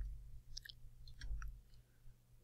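Several faint, short clicks and ticks in quick irregular succession over a low steady hum, with a dull low thump at the start and another about a second and a half in.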